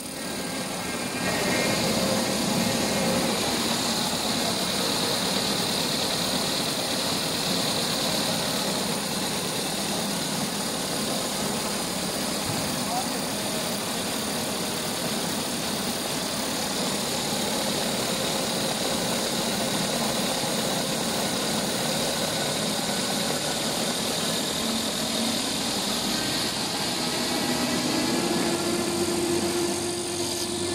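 Jumbo-roll paper slitting and rewinding machine running steadily, a continuous mechanical hum and hiss with a faint high whine. It gets louder about a second in, and a new low steady tone joins near the end.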